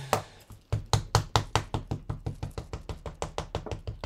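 A small ink pad dabbed repeatedly onto a red rubber stamp to ink it: rapid, even tapping, about five taps a second, starting about a second in.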